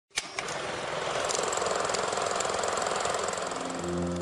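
Intro sound effect: a sharp click, then a steady rapid rattling hiss that fades as piano notes enter near the end.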